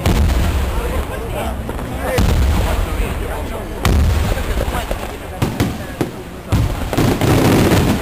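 Fireworks display: loud aerial-shell bangs every one to two seconds, each with a low rumble after it, then a dense run of crackling bursts near the end.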